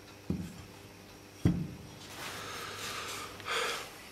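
Two sharp knocks, the second louder, as a homemade measuring tool's welded square steel-tube slider is handled, then a soft breathy hiss that swells near the end.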